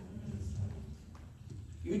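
A pause in speech: low, uneven room rumble picked up by a lapel microphone, with one faint knock about a second in.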